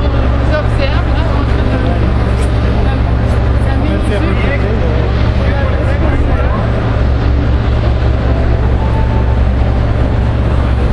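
City street ambience: a steady low rumble of traffic with faint, indistinct voices of people nearby.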